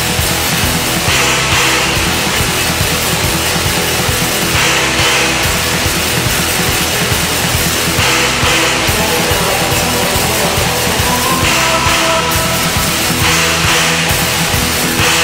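Raw black metal: distorted guitars and drums in a dense, unbroken wall of sound.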